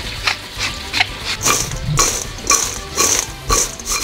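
Salt being shaken from a glass shaker over fried chips in a stainless steel bowl: a series of short, sharp rattling shakes, about two a second.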